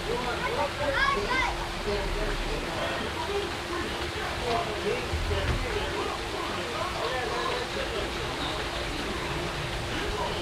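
Water pouring steadily from a backyard pool's stone spillway waterfall into the pool, with indistinct voices and a child's cry over it.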